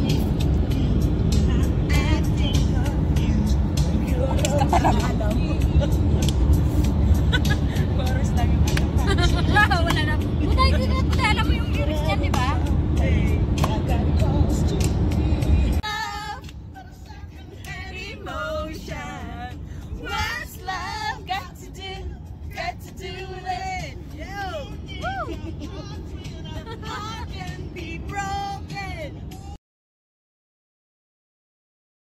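Passengers singing together inside a moving van, over the vehicle's steady low road and engine rumble. About sixteen seconds in, the rumble drops away suddenly and the singing carries on, quieter.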